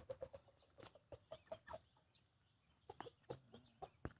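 Young three-month-old Pama chickens clucking faintly while they forage: short, soft clucks come in scattered groups, with a few small clicks between them.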